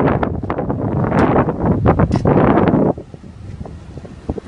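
Loud wind buffeting the phone's microphone, which stops suddenly about three quarters of the way through, leaving only a few faint clicks.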